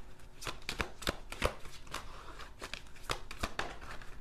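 Tarot cards handled and shuffled by hand: a run of irregular, sharp card snaps and clicks, several a second.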